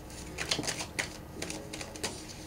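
A few light, irregular clicks and taps over quiet room tone.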